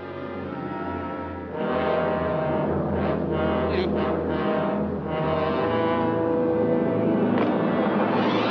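Dramatic orchestral film score led by low brass, with sustained chords that swell and grow louder about a second and a half in.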